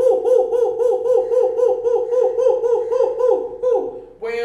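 A man's voice rapidly chanting "who-who-who" in an owl-like hoot, about five syllables a second, each one dipping in pitch.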